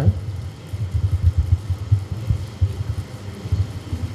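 Low, uneven rumble picked up by a corded handheld microphone during a pause in speech, typical of handling and breath noise on the mic.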